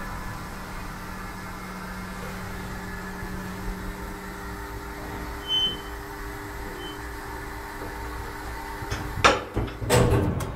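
C-E Söderlund hydraulic platform lift travelling, running with a steady hum. A few sharp clunks come near the end as it arrives and its door is unlatched.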